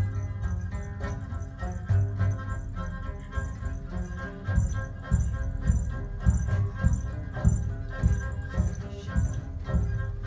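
Group acoustic jam: hand drums keep a loose beat of low hits under several sustained pitched instruments, with a high jingling rhythm running over the top.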